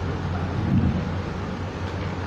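Low, steady rumbling noise on the microphone, with a louder bump just under a second in.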